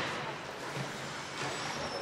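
Ice rink game ambience: hockey skate blades scraping the ice as a steady hiss, with faint players' shouts echoing in the arena.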